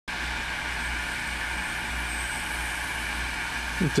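Steady hiss of receiver static from a Galaxy DX-959 CB radio's speaker, with a low hum underneath.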